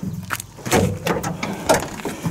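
Cab door of a 1979 Mercedes-Benz 207D being opened: a few sharp clicks and knocks from the handle, latch and door.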